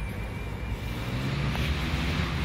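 Road traffic around a city square: a passing vehicle's tyre and engine noise growing louder in the second half, over a steady low rumble.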